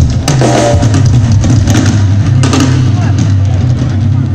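Live blues band playing loud: an electric bass line stepping between notes, drum kit hits, and a voice over the band.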